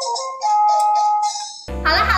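Simple electronic toy tune of single beeping notes with chiming sparkles, played by a VTech toy unicorn after a figure is set on it. Near the end it cuts abruptly to louder, fuller music with a bass beat and voices.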